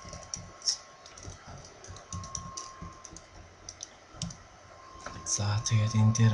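Computer keyboard typing, with keystrokes clicking at an irregular pace. A man's voice starts talking near the end.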